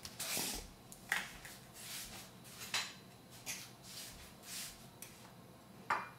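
Metal spoon scooping tapioca starch from a container and spreading it on a ceramic plate: a series of short, soft scrapes and rustles, about one a second, with one sharper click near the middle.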